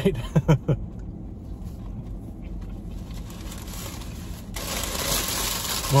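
Paper sandwich wrapper rustling and crinkling as it is handled. The rustling starts abruptly about four and a half seconds in, over a low steady hum.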